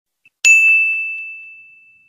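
A small bell struck once, a clear high ding that rings out and fades away over about a second and a half.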